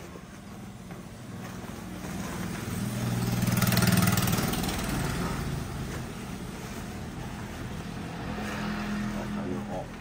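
A motor vehicle's engine passing by, its hum swelling to loudest about four seconds in and then fading, with low voices under it.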